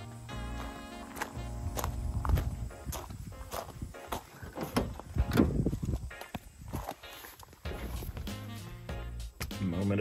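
Footsteps at a walking pace, about two a second, over background music.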